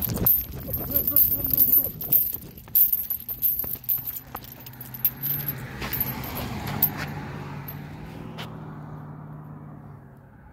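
Heavy metal chain dog leash jangling and clinking as the dog walks and pulls on it. About halfway through, a steady low hum comes in and slowly fades.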